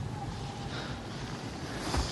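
Soft, steady rushing hiss of outdoor wind ambience in a film soundtrack, swelling briefly near the end.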